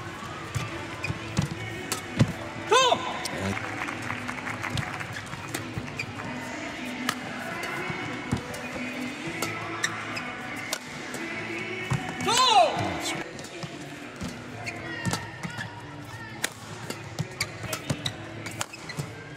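Badminton rally: sharp racket strikes on the shuttlecock at irregular intervals, with court shoes squeaking loudly twice, about three seconds in and again about twelve seconds in.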